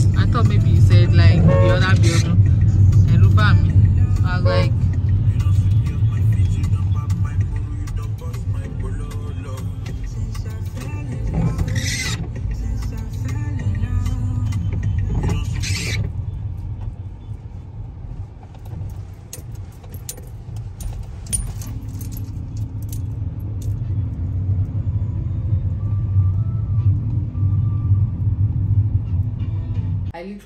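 Steady low rumble of a car on the move, heard from inside the cabin, with voices in the first few seconds and a couple of sharp clicks about twelve and sixteen seconds in.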